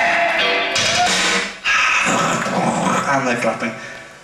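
Live band music led by electric guitar, its notes bending in pitch, with a voice over it. The sound dips sharply about a second and a half in and fades away near the end.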